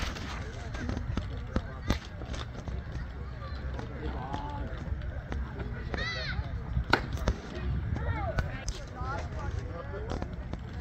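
Spectators' voices calling out now and then across a ballfield, over a steady low rumble, with a few sharp knocks; the loudest knock comes about seven seconds in.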